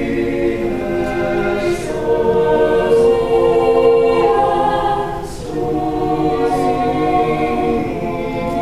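Mixed choir of teenage voices singing a cappella in sustained chords, with soft hissing consonants. The sound swells to its loudest in the middle, eases off briefly about five seconds in, then moves into the next phrase.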